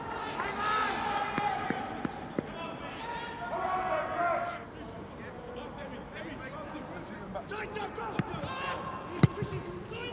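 Pitch-side sound of a football match with no crowd: players and staff shouting across the pitch, with a couple of sharp thuds of boot on ball, the loudest near the end.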